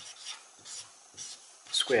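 Marker pen rubbing on paper as figures and brackets are written: a string of short, faint scratchy strokes.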